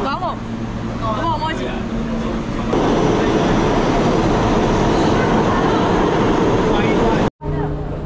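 New York City subway train running through the station: a loud, steady rumble of the train on the track that comes in about three seconds in and cuts off suddenly near the end. Before it, voices over a steady low hum.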